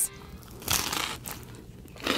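Crisp baked crust of a pizza cone crunching as it is bitten and chewed close to the microphone, with one main burst of crunching lasting about half a second, well into the first second.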